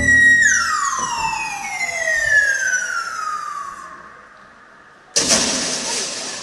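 A stage sound effect over the show's loudspeakers: a whistle-like tone holds high, then slides slowly down in pitch over about four seconds and fades. About five seconds in, a sudden loud burst of noise, like a crash or blast, cuts in and dies away.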